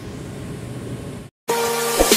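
Steady machinery and ventilation hum of a ship's engine control room. It cuts off suddenly just over a second in, and after a brief silence loud electronic music begins.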